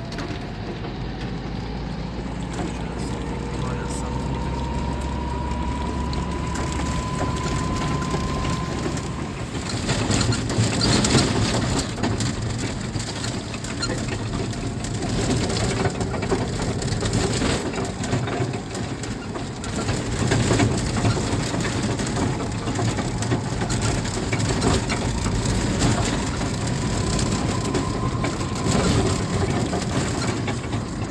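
A vehicle driving along a road, its engine note rising slowly over the first nine seconds, with steady road noise throughout.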